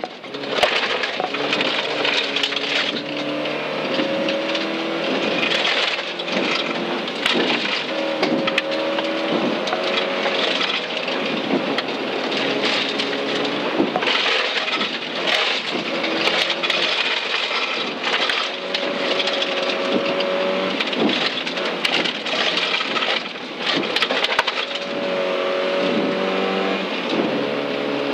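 Volvo 940 rally car's engine, heard from inside the cabin, driven hard on a gravel stage. The engine note keeps rising, breaking off and falling as the driver changes gear and takes the corners, over steady road noise with frequent sharp clicks of gravel striking the car.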